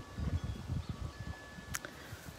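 Wind chime ringing softly, its long steady tones held over a low rumble, with a sharp click near the end.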